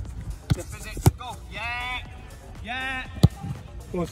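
A soccer ball struck by boots on an artificial-turf pitch: sharp thuds about half a second in, at about a second, and a little after three seconds, the loudest near the end. Two shouts from players come in between, over background music.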